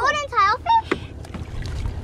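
Excited voices briefly at the start, then water lapping and splashing against the side of a boat as fish are brought to the surface, with a single knock about a second in.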